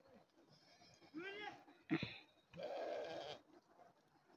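Sheep in a passing flock bleating: one clear, wavering bleat about a second in, a sharp knock just after it, and a longer, harsher, noisier call about two and a half seconds in.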